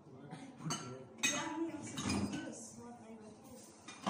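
Glass bottles and drink cans clinking and knocking together as they are handled and set down: a couple of sharp clinks about a second in, then a short clatter, and another near the end.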